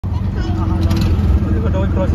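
Auto-rickshaw engine and drivetrain running with a steady low rumble, heard from inside the open passenger cabin while the vehicle is moving.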